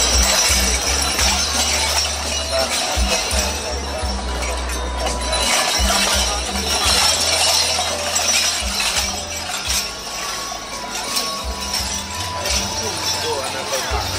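Music over loudspeakers and crowd chatter, with clinking and jingling from the bells and hanging trinkets on a costumed performer's outfit as he walks by.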